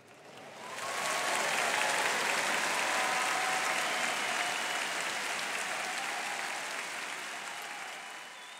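Large audience applauding, swelling in over about the first second, then holding steady and easing slightly near the end, with a few voices calling out over it.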